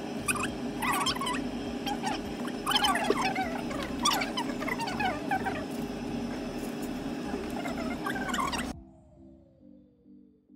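Room noise with indistinct background voices over a steady low hum, cutting off suddenly about nine seconds in to soft background music with a slowly falling tone.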